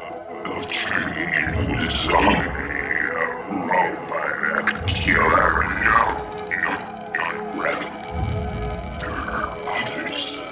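Eerie film score mixed with warped, growl-like sound effects that slide up and down in pitch and swell repeatedly: the sound of a telepathic scanning, a mind being probed.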